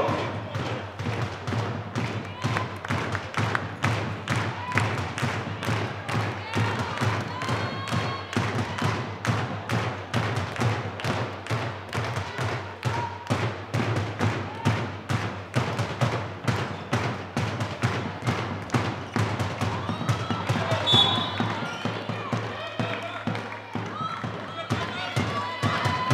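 A handball bouncing and players' feet on a sports hall floor during play: a steady run of short thuds, several a second, with voices calling faintly.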